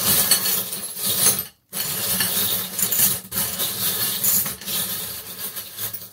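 A hand stirring through a cut-glass bowl heaped with small charms, a continuous jingling clatter of charms knocking against each other and the glass. It stops briefly twice, about one and a half and three seconds in.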